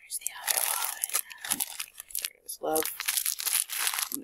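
Plastic packets crinkling and rustling as they are handled, with a brief voice about two-thirds of the way through.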